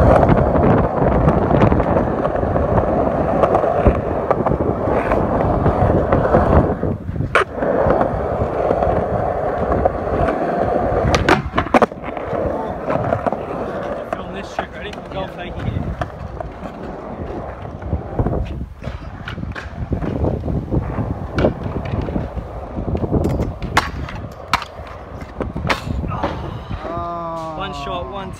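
Skateboard wheels rolling over rough concrete, a continuous rumble that is louder for the first half, with several sharp clacks of the board along the way.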